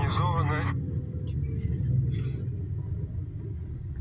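Steady low rumble of a sightseeing bus's engine and tyres, heard on board while it drives, after a voice trails off about half a second in.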